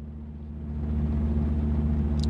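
Semi-truck's diesel engine idling steadily, heard from inside the cab as a low, even hum, with a hiss over it that rises a little about half a second in.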